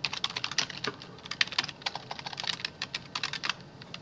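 Typing on a computer keyboard: a quick run of keystrokes that stops shortly before the end.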